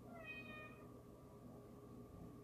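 A cat meowing once, a single short call of under a second, its pitch falling slightly, over a faint steady background hum.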